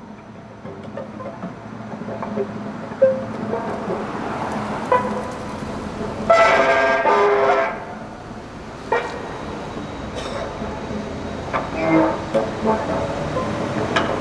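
Free improvisation on violin, cello and guitars: scattered plucked and scraped notes over held tones, with one loud held many-toned sound about six seconds in that lasts about a second and a half.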